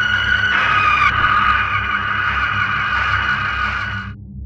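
A loud, shrill screech used as a horror jump-scare sound effect, held over a low drone, shifting in pitch about a second in and cutting off suddenly at the end.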